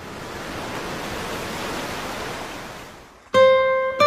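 Gentle surf: a small wave washing up onto a sandy beach, swelling and fading away over about three seconds. Near the end, an acoustic guitar comes in with a strummed chord.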